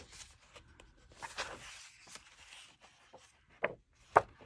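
Paper pages of a hardcover coloring book being turned by hand: soft rustling and brushing of the sheets, with a short sharp tap a little before the end.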